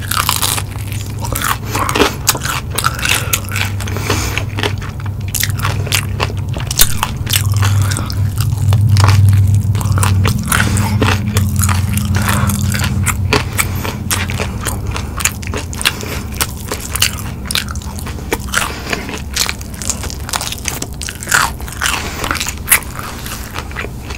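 Close-miked biting and chewing of crispy breaded fried chicken wings coated in cheese sauce: dense crunching and crackling of the breading, with a low hum swelling under it in the middle.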